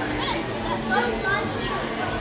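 Children's voices and general chatter in a busy restaurant dining room, with a steady low hum underneath.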